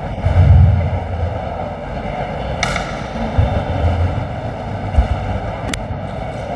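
Microphone handling noise as a handheld mic is passed along: low bumps and rubbing, a sharp click about two and a half seconds in, a thump at about five seconds and another click near the end, over steady room noise.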